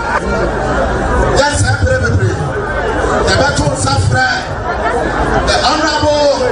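Speech only: a man talking into a microphone, not picked up by the transcript.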